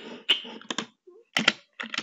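A few computer keyboard keystrokes, tapped one at a time with short gaps between them.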